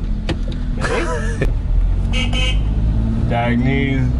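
Car engine heard inside the cabin as a steady low drone, with people laughing and voices over it.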